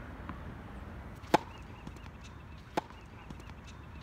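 Two sharp tennis ball impacts on an outdoor hard court, a loud one about a second in and a much weaker one over a second later.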